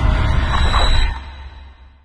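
The tail of a sudden deep trailer boom: a low rumble with hiss over it, loud for about a second and then fading away.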